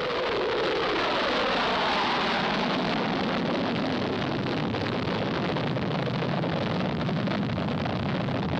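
Lockheed SR-71 Blackbird's two jet engines at takeoff power, a loud, steady rushing noise as the aircraft rolls down the runway and climbs out. The sound turns deeper and duller in the second half as the aircraft draws away.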